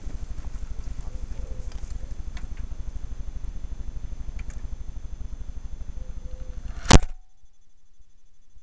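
Wind rumbling on the camera microphone, a steady low rumble with a fast flutter. About seven seconds in comes one loud knock, and after it only a faint hiss remains.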